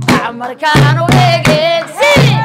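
Women singing a Somali baraanbur song with wavering, ornamented melody over a steady drum beat struck with wooden sticks, about two to three strokes a second.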